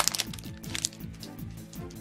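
Foil wrapper of a Yu-Gi-Oh! booster pack crackling as it is torn open and handled: a sharp crackle right at the start and a weaker one just under a second in, over background music.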